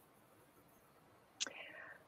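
Near silence, then about one and a half seconds in a short mouth click followed by a faint breath, a person drawing in air just before speaking.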